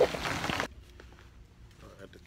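Steady rain hiss under a man's last word, cut off suddenly less than a second in. After the cut there is only quiet indoor room tone with faint rustling.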